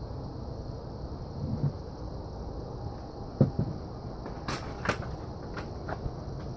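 Steady low outdoor background rumble. About three and a half seconds in there is a brief pitched sound, and a few sharp clicks come near the end.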